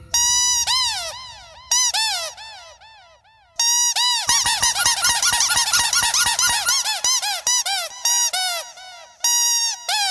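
A rubber squeak toy squeezed over and over, giving a string of squeaks that rise and fall in pitch. They come in a sparser run, dip quiet near the third second, then come thick and fast.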